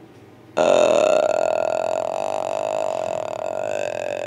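A man's long, rough, belch-like vocal sound, starting about half a second in and held for nearly four seconds before cutting off abruptly.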